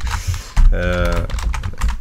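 Computer keyboard typing: quick runs of keystrokes entering a terminal command.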